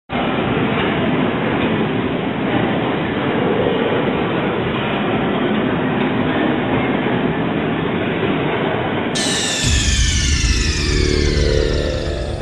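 Rough, rumbling location sound from a handheld camcorder being moved about, full of handling and movement noise. About nine seconds in, a sound effect of several falling sweeps cuts in, with heavy bass joining a moment later.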